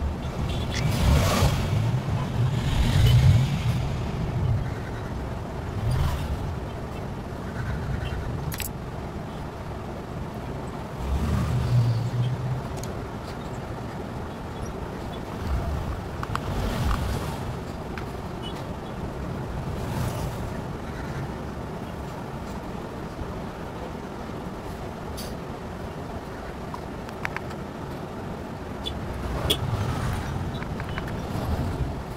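A low rumble of background noise that swells loudly several times, with a few faint clicks.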